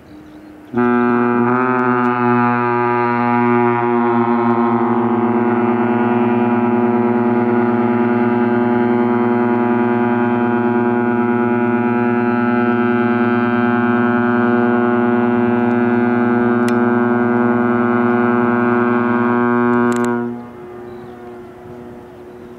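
One long blast of a ship's horn, about nineteen seconds long: a low, steady tone rich in overtones that wavers slightly in pitch for its first few seconds, then holds level until it stops near the end.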